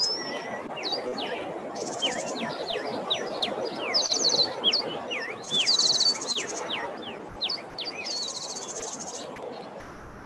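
Birds chirping in many quick notes that slide downward, with high buzzy trills about a second long every two seconds or so, over a steady background noise.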